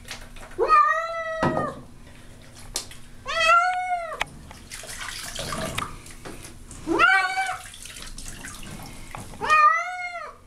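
A domestic cat yowling four times in protest at being bathed, each call a long drawn-out meow that rises in pitch, holds, then falls.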